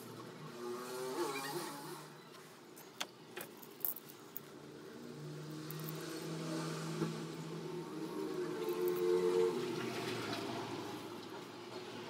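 A motor vehicle's engine running, with pitched tones that shift and swell over several seconds. There are a few sharp clicks around three to four seconds in.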